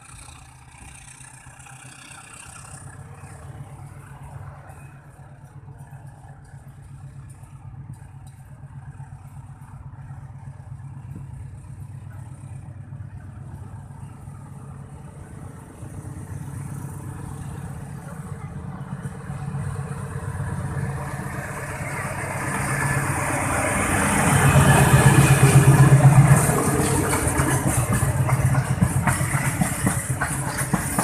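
Diesel locomotive hauling tank wagons approaching along the track, its engine hum growing steadily louder until it passes loudest about 25 seconds in. Then comes the rolling noise of the tank wagons' steel wheels on the rails.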